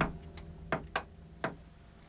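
Light switch being flipped off: a few short, sharp clicks spread over about a second and a half.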